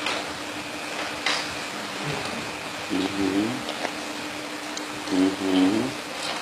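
A person's voice is heard briefly twice, about halfway through and near the end, over a steady low hum and background hiss.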